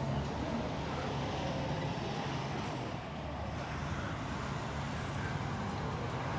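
Steady outdoor street ambience: a low, even rumble of road traffic with no distinct events.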